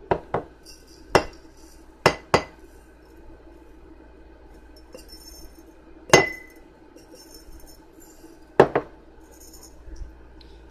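Glass jars clinking and knocking against each other and the countertop while coloured rice is poured from one jar into a mason jar: a handful of sharp clinks, one about six seconds in ringing briefly, with soft hissing patches of rice grains sliding in between.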